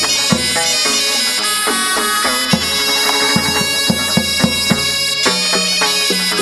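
Vietnamese chầu văn ritual music: a reedy wind instrument carries a sustained melody over the ensemble, with drum strokes underneath.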